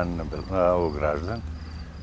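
A cricket chirping in a steady rhythm, about two short, high, faint chirps a second.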